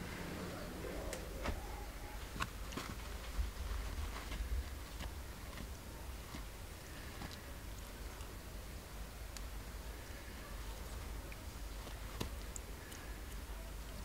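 Quiet background: a low rumble with a faint hiss and a few soft, scattered clicks.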